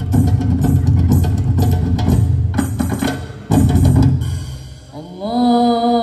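Beduk drums and other percussion played in a fast, dense rhythm, breaking off briefly about three and a half seconds in, then one more burst that dies away. Near the end a single voice starts a long chanted note that slides up and then holds steady.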